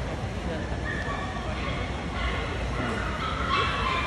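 Dogs yipping and barking in short calls over a background of crowd chatter, loudest near the end.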